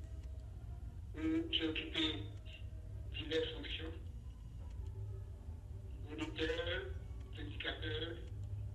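A person speaking in short phrases over a video-call link, the voice thin like a phone line, with a steady low hum underneath.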